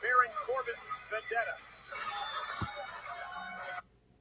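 Televised wrestling broadcast audio: arena noise with music that cuts off suddenly near the end as the video finishes playing.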